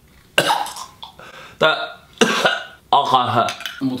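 A man gagging and retching in several short bursts after tasting wet dog food, followed by speech.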